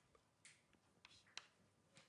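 Faint taps of writing on a board, two short strokes about a second apart, against near silence.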